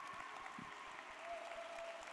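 Audience applauding, fairly faint, a dense even patter of many hands clapping at the end of a talk.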